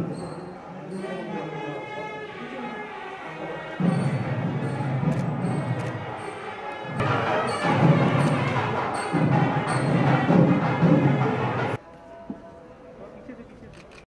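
Voices mixed with music that carries a regular beat, growing louder about halfway through, then cutting off suddenly about two seconds before the end, leaving a much quieter background.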